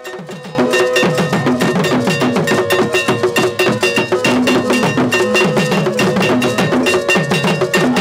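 Akan drum ensemble: a hand-held iron bell (dawuro) struck with a stick rings a steady repeating pattern over wooden barrel drums beaten with sticks. The playing starts about half a second in.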